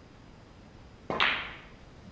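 A snooker shot: a single sharp click about a second in as the cue strikes the cue ball and the balls make contact, ringing on briefly as it fades.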